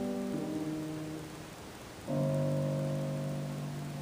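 Grand piano playing the closing chords of the song's accompaniment. A held chord fades, its harmony shifting just under half a second in, then a final chord is struck about two seconds in and left to ring and die away.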